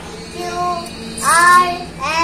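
A young boy singing in a sing-song voice: two drawn-out phrases with gliding notes, the second louder.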